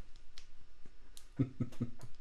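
A brief, soft chuckle near the end, a few short voiced pulses, after a couple of faint clicks over low room tone.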